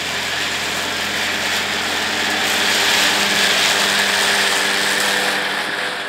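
Ford farm tractor's engine running steadily as the tractor drives through tall dry grass, growing louder toward the middle and easing off slightly near the end.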